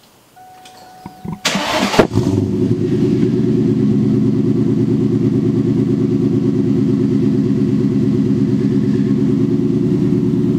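1999 Ford Mustang GT's 4.6-litre two-valve V8 starting, breathing through a Borla Stinger S-type cat-back with a catted X-pipe. The starter cranks briefly about a second and a half in, the engine catches at about two seconds, and it settles into a steady idle.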